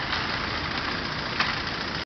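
Skateboard wheels rolling on rough asphalt: a steady rumbling roll, with one short click about one and a half seconds in.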